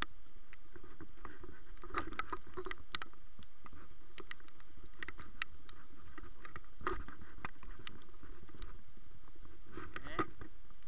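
Steady rush of a fast-flowing river, with scattered clicks and scuffs from footsteps on a wet, muddy path and the camera being jostled.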